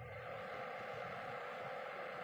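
Metal lathe running with its chuck and workpiece spinning: a steady mechanical hum with a faint high whine.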